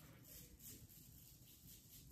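Near silence: room tone, with only a few very faint soft swells.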